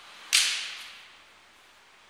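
A single sharp crack, like a slap or a whip, about a third of a second in, loud against the faint room noise, with a short echo dying away over about half a second.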